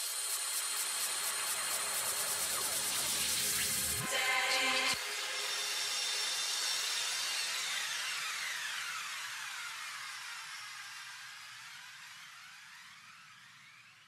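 Electronic hissing whoosh with a slowly sweeping, phaser-like shimmer, the tail of a slideshow's backing music. A brief louder swell comes about four to five seconds in, then the sound fades out slowly over the last eight seconds.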